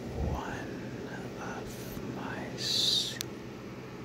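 Close-miked whispering, drawn out extremely slowly with each syllable stretched into a long breathy sound. About two and a half seconds in comes a long hissed consonant, the loudest sound.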